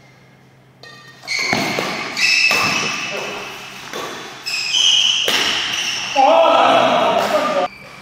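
Badminton doubles rally on an indoor court: sharp racket strikes on the shuttlecock at irregular intervals, mixed with high squeaks of court shoes on the floor. Both start about a second in and stop abruptly near the end.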